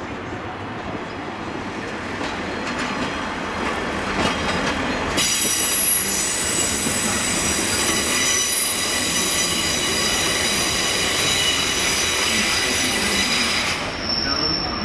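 Steel wheels of a steam locomotive squealing on tight curved track as it eases slowly through the station pointwork. A low rumble and clatter of wheels over the rail joints comes first; about five seconds in, a high, many-toned squeal sets in, holds steady and stops suddenly near the end.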